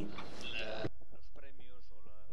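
Speech: a voice talking in a conference hall. The background hiss drops away suddenly a little under a second in, and the talking carries on.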